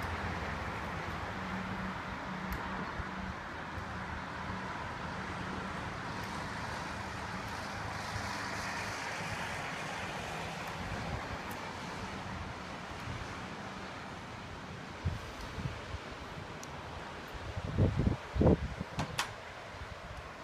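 Steady outdoor background noise, a wash without a clear pitch. Several loud low thumps come in close succession about seven-eighths of the way through.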